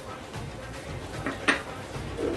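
Spoon stirring rice flour into hot water in a stainless-steel saucepan, with one sharp knock of the spoon against the pan about one and a half seconds in.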